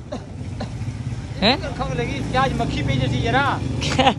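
A motor vehicle's engine running steadily, growing louder about three seconds in, with people talking over it.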